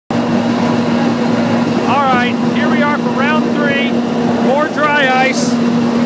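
Machinery running steadily and loudly, with a constant hum. Voices are heard over it.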